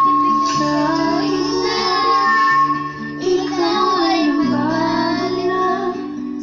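A toddler singing into a corded microphone over a karaoke-style backing track of steady electronic notes.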